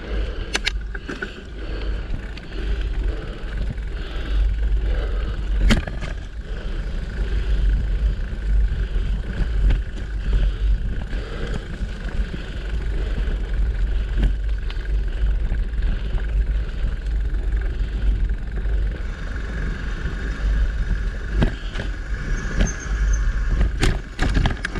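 Mountain bike rolling along a dirt forest trail, with wind buffeting the microphone and the steady noise of tyres on the ground, broken by a few sharp clicks and knocks as the bike jolts over bumps.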